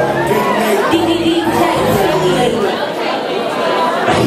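Audience chattering and calling out, echoing in a large hall, over music that thins out in the second half and comes back loud at the very end.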